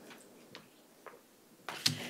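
Quiet room tone with a few faint clicks, then a brief cluster of light knocks and rustle near the end as someone reaches the lectern microphone with papers in hand: handling noise picked up by the lectern mic.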